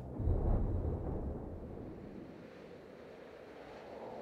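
A deep low boom about a quarter second in, trailing off into a wind-like rushing drone that slowly fades away: trailer sound design under the closing title cards.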